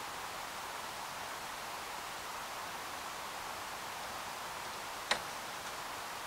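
A single sharp plastic click about five seconds in, as the door and interior trim of a scale DeLorean model kit are handled, over a steady background hiss.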